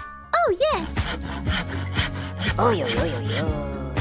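Quick back-and-forth sawing strokes of a knife cutting on a plate, over light background music with a couple of cartoon whoop glides near the start.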